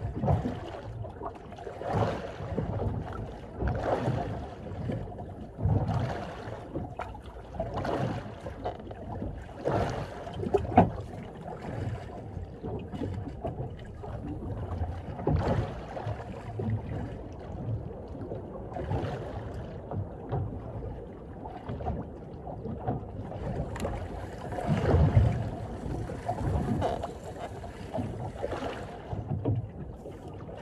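Small waves slapping against the hull of a drifting small boat about every two seconds, over a low rumble of water and wind. A steady hiss comes in for a few seconds near the end.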